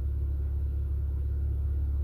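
A steady low rumble.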